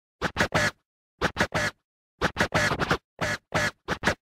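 Intro music made of DJ turntable scratches: short, sharp scratches in clusters of two or three, about one cluster a second, with silence between them.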